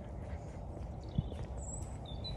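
Footsteps of someone walking on a paved path, with soft thuds over a low rumble. In the second half, a few short, thin, high bird calls.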